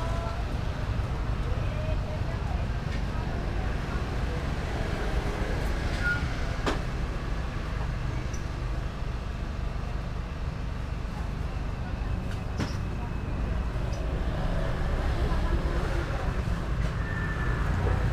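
Street ambience: a steady low rumble of road traffic with faint voices in the background and a couple of sharp clicks.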